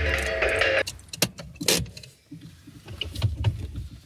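Background music cuts off suddenly about a second in. A few sharp clicks and knocks follow, two of them loud, over a faint low rumble: small handling noises inside a parked car.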